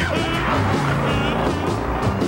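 Cartoon soundtrack of music mixed with a car engine sound effect.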